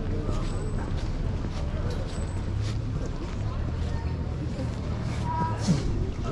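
Chatter of people standing around, over a steady low rumble; one voice comes through more clearly near the end.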